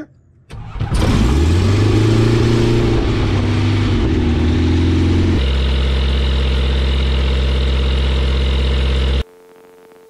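Kitfox light aircraft's piston engine and propeller being started: it cranks, catches about a second in and runs up in pitch, then settles into a steady idle. Near the end the sound drops sharply to a faint steady hum.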